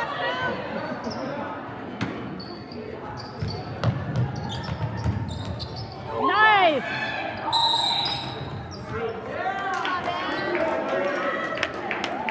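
Basketball game in a gym: a ball bouncing and thudding on the hardwood among spectators' voices. About halfway through a loud shout rises and falls, then a referee's whistle gives one short blast.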